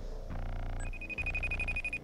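A phone ringing in short repeated bursts, with a steady high tone over the second burst.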